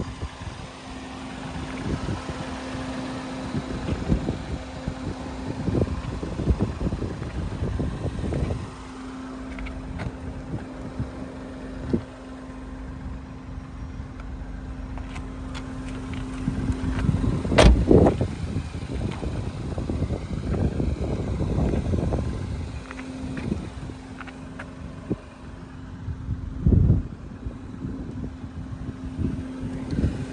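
Wind buffeting the microphone in rough low rumbles over a steady low hum that drops out and returns, with a sharp knock a little past halfway and a duller thump later.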